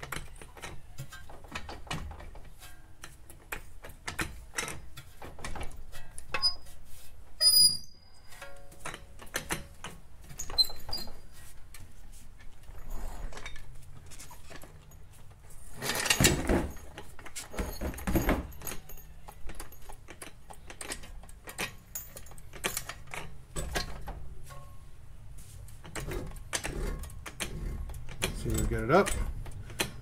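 Scattered clicks and metal knocks of a car's front suspension being worked by hand: a steering knuckle, brake rotor and caliper raised and guided onto a coilover strut. There are two louder, longer noises a little past halfway.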